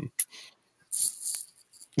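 A sharp click, then about a second in a brief rattling rustle close to the microphone.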